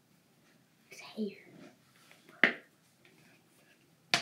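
A girl's soft, half-whispered speech, then a single sharp click about halfway through.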